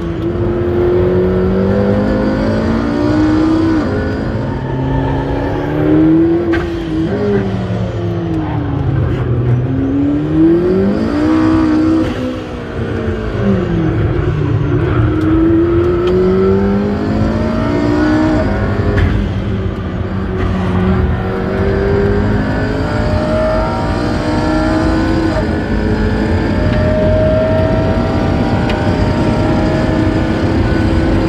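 McLaren P1's twin-turbo V8 heard from inside the cabin at full throttle on track, its note climbing again and again with sudden drops at each upshift. About ten seconds in the note falls and rises again, then it pulls in one long slow climb in a high gear, past 250 km/h by the end.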